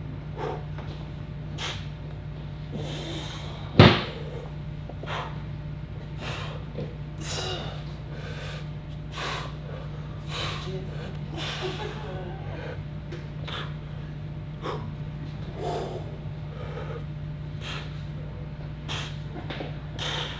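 A man breathing hard in short, repeated exhales while straining through a set of side-lying dumbbell row raises, over a steady low hum. A single sharp knock sounds about four seconds in.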